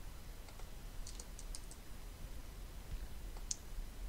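Faint clicks from a computer keyboard and mouse during code editing: a quick run of about five clicks about a second in and one more near the end, over a low steady hum.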